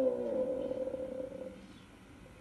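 A voice holding one long, drawn-out vowel that sinks slightly in pitch and fades out about a second and a half in.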